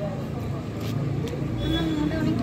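People's voices over a steady low rumble, with a voice coming in near the end.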